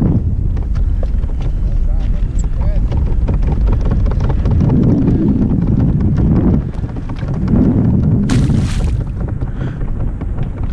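Wind buffeting an action-camera microphone on open water, a heavy unsteady rumble, with a brief hiss of rushing water or grass against the hull near the end.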